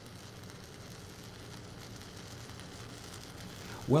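Shielded metal arc (stick) welding with an E6010 electrode: the arc burns with a steady, even hiss, fairly quiet.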